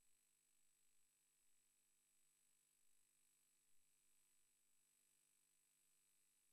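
Near silence: only a faint steady hiss with a thin high-pitched tone.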